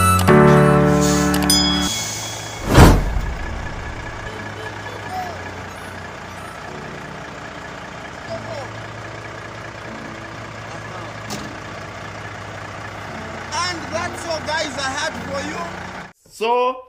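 Music for the first two seconds, then a short loud burst about three seconds in. After that a Volvo FH truck's diesel engine idles steadily, with a man's voice near the end.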